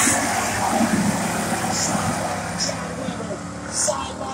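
Pack of hobby stock race cars' engines running on a dirt oval, passing close and then fading as the cars move away down the track.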